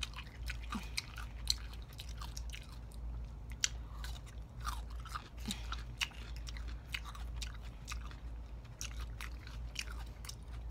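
Close-miked chewing of raw cucumber spears by two people, with many irregular sharp wet mouth clicks, over a steady low hum.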